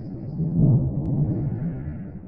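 Thunder rolling: a low, irregular rumble that swells under a second in and then fades away.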